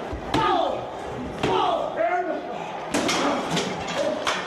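A backstage wrestling brawl: men shouting and yelling, with four sharp slams of bodies striking walls, floor or equipment cases.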